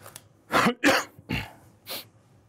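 A person coughing four times in quick succession, the first two coughs the loudest and the last one softer near the end.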